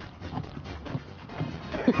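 Young voices shouting and yelping in a scuffle, getting louder toward the end, where a German "Ja" is spoken.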